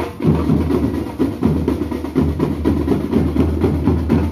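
Marching band drum section playing together: snare and bass drums beating a dense, steady rhythm, with a brief drop just after the start before it comes back in.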